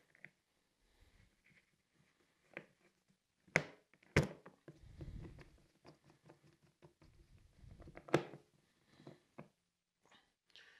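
Screws being fitted to fasten the service cover back onto a generator: a few sharp clicks and knocks of screw and tool against the cover, three of them loudest, with faint handling noise between.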